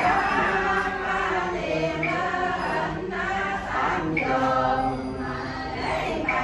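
A group of men chanting a Vietnamese funeral prayer together from prayer books, in drawn-out sung phrases.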